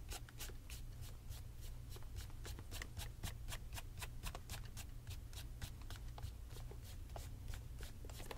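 A cloth rubbed briskly back and forth over the leather of a tassel loafer, buffing the shine, in quick even strokes of about four or five a second.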